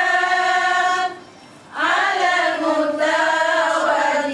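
A group of women chanting together in unison without accompaniment, in long, drawn-out notes. They pause for breath for under a second about a second in, then start again.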